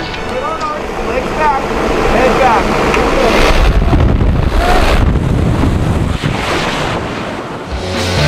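Loud rushing wind at a jump plane's open door and in freefall, buffeting the camera microphone. It swells in the middle and eases off near the end. A few whooping shouts break through in the first seconds and again about halfway.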